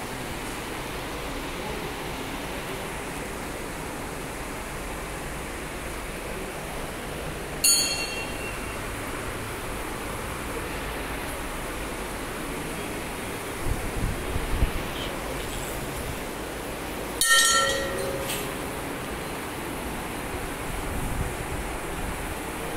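Steady hiss of a busy temple hall with fans running, broken twice by a sharp metallic strike of a temple bell that rings briefly, the first about eight seconds in and the second about nine seconds later. A few dull thumps come in between.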